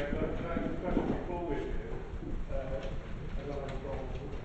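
Indistinct voices of people talking, not addressing the room, with a few low knocks and thuds among them.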